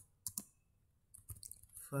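Computer keyboard keys being typed: a few clicks, a short pause, then a quicker run of keystrokes in the second half.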